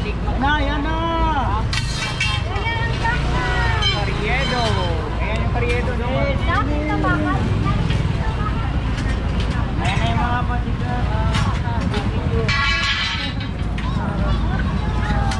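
Busy street crowd: many overlapping voices talking and calling out over a steady low rumble of traffic. Scattered short knocks and clatter come from metal stall frames being taken down.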